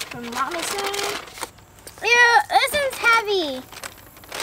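Voices only: a woman's low 'mmm' while tasting, then a girl's high-pitched exclamations, 'No! Mm, mm'.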